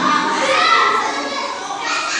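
Several children's voices shouting and chattering over one another at play.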